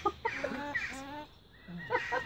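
White cockatoo making short laugh-like calls, imitating a human laugh: a run of calls in the first second and a few more near the end.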